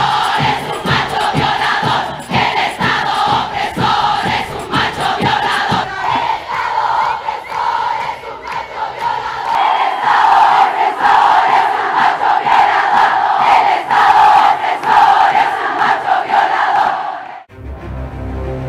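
A huge crowd of protesters chanting together in unison, with a steady beat of sharp strokes for the first six seconds or so. It cuts off abruptly near the end.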